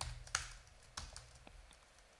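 Faint keystrokes on a computer keyboard: a handful of separate key taps, spaced out rather than in a fast run.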